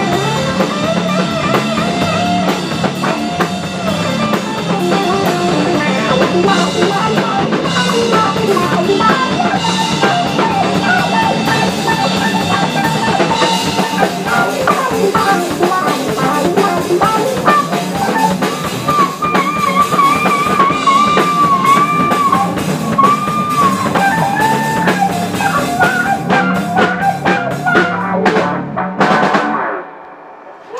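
Live blues-rock band playing an instrumental stretch: electric guitar, bass guitar and drum kit, loud and dense. In the second half a sustained lead line wavers and bends in pitch over the band, and the song cuts off abruptly right at the end.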